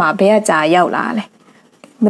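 Speech only: a narrator's voice telling a story in Burmese for just over a second, then a short pause.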